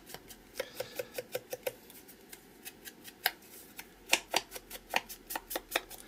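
Foam ink blending tool being flicked and dabbed against the edges of a small piece of paper to ink and age its raw white edges. It makes runs of light, quick taps, about five a second at first, then a pause and a denser run in the second half.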